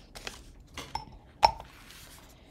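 A plastic Tombow liquid glue bottle being lifted out of a small glass jar: a few light taps, then one sharp clink of the bottle against the glass about one and a half seconds in that rings briefly.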